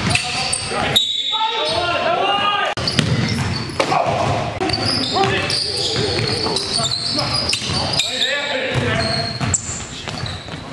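Live basketball game sound in an echoing gym: voices calling out, and a basketball bouncing off the hardwood floor.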